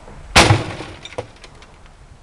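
A CRT computer monitor thrown from an upper-floor window lands on a rubbish heap with a loud crash and its glass shatters. The crash comes about half a second in and trails off in a clatter of debris, with one smaller knock a little after a second.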